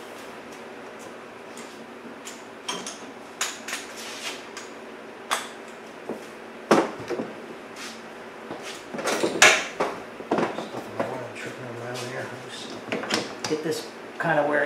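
Scattered clicks, knocks and clatter of hand tools and parts being handled over a steady low shop background, including an air impact wrench being set down. The sharpest knock comes about seven seconds in and the loudest clatter at about nine and a half seconds.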